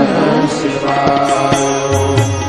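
Devotional Shiva music: chanted mantra singing over instruments with light drum strokes.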